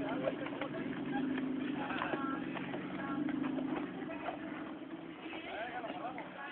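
Small 4x4's engine running steadily under load as it crawls up a rocky slope, fading away about four seconds in, with people's voices over it.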